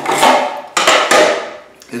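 A hard plastic bar scabbard is slid off a cordless chainsaw's bar and the saw is handled on an aluminium work platform: two loud scraping clatters about three-quarters of a second apart, each fading quickly.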